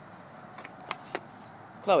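Steady high-pitched drone of insects, with two faint clicks near the middle.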